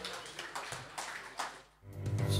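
Faint room noise of a small bar after a performance, with a few scattered clicks or claps, fading out to near silence; music starts right at the very end.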